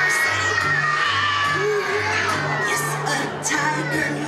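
Young children singing along to a recorded song with a steady pulsing bass line. One child's high voice holds a long loud note that slowly falls in pitch over the first two and a half seconds.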